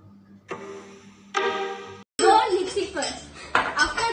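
A held musical tone lasting about a second and a half, then girls' voices with kitchen bowls and utensils clinking.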